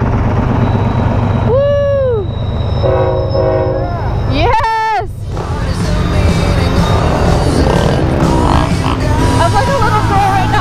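Freight train's diesel locomotives rumbling past close by, with a short chord-like blast of the locomotive horn about three seconds in. From about five seconds on a louder, steady rush of noise takes over.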